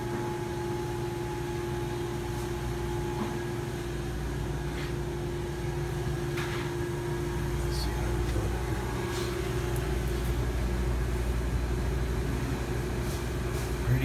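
The refrigeration unit of an old salad rail cooler, its small compressor and condenser fan, running with a steady hum after being charged with R-134a. A few faint clicks sound over it.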